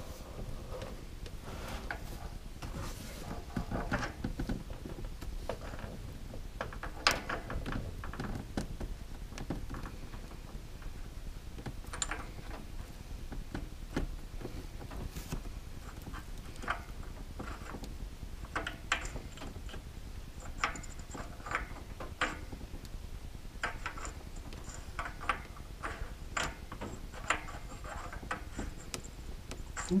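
Double-roller steel timing chain and sprocket being handled and fitted by hand: scattered light metallic clicks and clinks of chain links and sprocket, a few sharper knocks among them.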